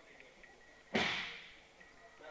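A person thrown to the foam gym mat lands with one sharp slap-thud about a second in, dying away with a short echo in the hall.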